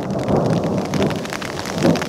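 Rain hitting a fabric umbrella just overhead: a dense, steady run of close drop impacts with a low rumble under it.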